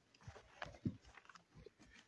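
Faint, scattered small sounds in a quiet room: a few soft clicks and rustles of handling, and a brief low murmur a little under a second in.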